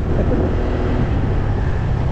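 Wind rushing over the microphone of a moving motorcycle, a steady low rumble with the bike's engine and road noise underneath.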